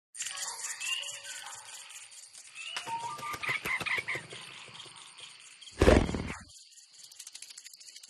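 Cartoon soundtrack: light music with tinkling, rattling effects and short pitch glides, then a loud short burst about six seconds in.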